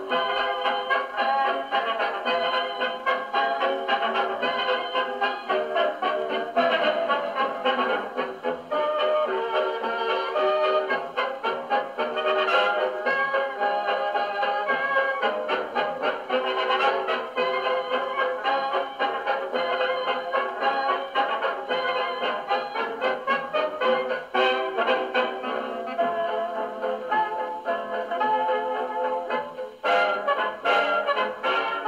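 An 8-inch Edison Bell Radio 78 rpm record of a dance band with brass, played acoustically on an HMV 101J portable wind-up gramophone. The sound is thin, with little deep bass.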